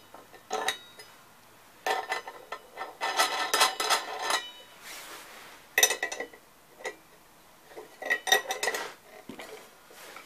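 Metal clinking and rattling from a wrench working the spindle nut of a power hone while a diamond disc is fitted and tightened. It comes in several short bursts of clatter, with a bright metallic ring in some of them.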